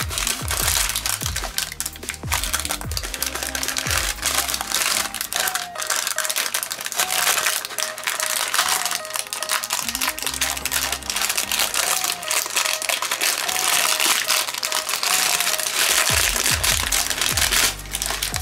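Paper crinkling and crackling as it is peeled off a hardened layer of hot glue and model grass, over a background music beat with a short repeating melody.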